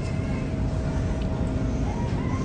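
Steady low rumble of grocery-store background noise, with a faint steady hum running through it.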